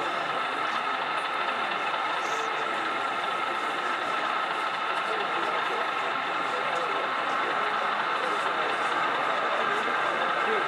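Steady engine-like drone from a model Class 37 diesel locomotive running slowly with its passenger train, over a murmur of voices in a busy hall.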